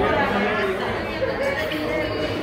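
Indistinct chatter of several people talking at once, with no single voice clear.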